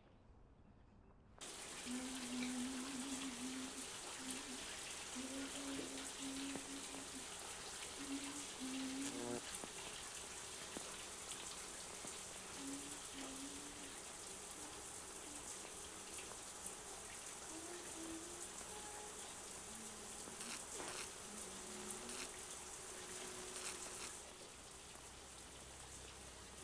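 Shower water running, a steady hiss that starts about a second and a half in, with faint short low tones coming and going over it.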